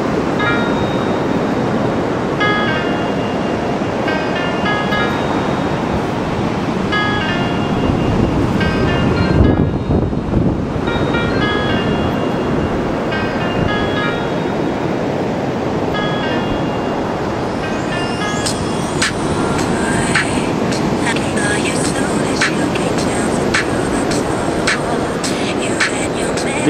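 Strong beach wind rushing over the microphone in a steady roar of noise, with a melody of short high notes from music playing through it for the first two-thirds. Near the end a run of sharp clicks and knocks cuts through the wind.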